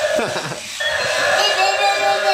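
Battery-operated walking toy dinosaur playing its electronic roar sound effect through its small speaker. A growl drops in pitch near the start, then a held, buzzy pitched tone follows.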